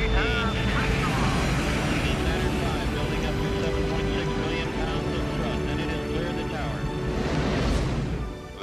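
Saturn V rocket engines at liftoff: a loud, continuous rumbling roar. Music plays over it and swells near the end.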